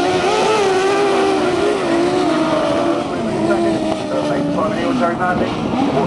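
Engines of several racing sidecar outfits running hard together on a grass track, a steady engine note that wavers in pitch and dips briefly about five seconds in.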